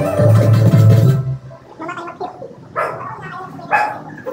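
Music with a heavy bass plays and cuts off suddenly about a second in. Three short voice sounds follow, the last near the end.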